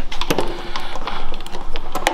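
A run of irregular light clicks and knocks: a thin steel scraper cut from an old bandsaw blade being set and shifted in the jaw of a wooden workbench vise.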